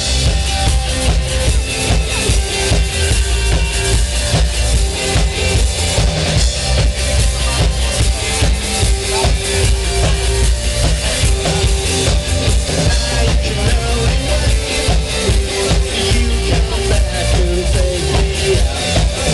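A rock band playing live: a drum kit keeping a steady beat under electric guitars, bass and held notes, loud and continuous.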